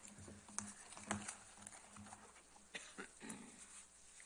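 A few faint, sharp clicks and rustles of papers being gathered up at a lectern microphone.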